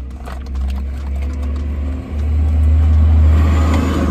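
Low rumble of a passing road vehicle, growing louder about two seconds in and fading just after, heard from inside a parked car.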